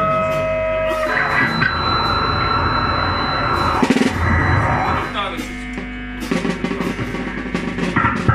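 Live band jamming on electric guitar, bass guitar and drum kit. The guitar holds long sustained notes, there is a quick run of drum hits about four seconds in, and the drums build back up near the end.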